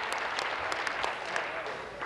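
A group of legislators applauding together, the clapping thinning out near the end.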